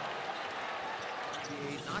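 Indoor basketball arena crowd noise, a steady hubbub, with a ball bouncing on the hardwood court; a commentator's voice comes in near the end.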